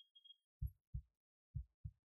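Four soft, low thumps in two pairs, like a heartbeat, from the opening of an embedded YouTube video as it starts playing.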